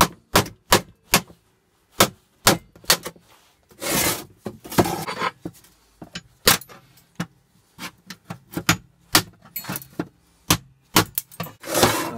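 Hammer driving a chisel against the riveted sheet-metal casing of an old water boiler to cut off its rivets: a long run of sharp, irregular metallic strikes, with a rattling scrape about four seconds in.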